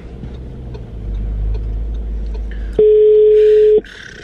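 Telephone ringback tone from a phone on loudspeaker: one steady, mid-pitched beep about a second long near the end, part of a ringing cycle of a beep every few seconds, meaning the called phone is ringing and has not been answered. A low rumble from the car cabin runs beneath it.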